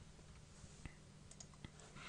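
Near silence with a few faint, sparse clicks from a computer keyboard and mouse as a number is typed in and a dialog is confirmed.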